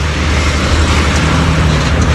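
Loud, steady road traffic noise from cars, vans and motorcycles on a busy urban avenue: a continuous low engine rumble with tyre noise.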